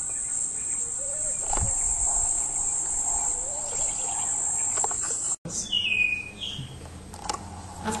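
Steady high-pitched insect chorus that cuts off abruptly about five seconds in; a brief chirp follows shortly after.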